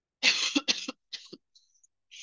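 A person coughing: two hard coughs in quick succession, then a weaker cough about a second in, followed by a faint breathy clear. The cougher is sick with COVID.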